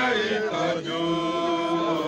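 Several voices singing a slow hymn-like chant together, holding long steady notes.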